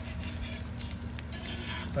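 Egg frying in butter on a cast iron Wagner Ware No. 9 griddle, sizzling with faint crackles, while a metal spatula scrapes under the egg to work it loose from the slightly sticking surface.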